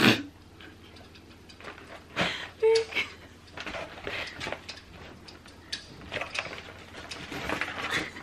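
Cardboard chocolate selection boxes being handled and moved: scattered knocks, taps and rustles of the packaging, loudest right at the start and again a couple of seconds in.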